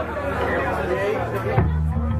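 Audience chatter, then a live rock band comes in about one and a half seconds in with a hit and a steady bass line.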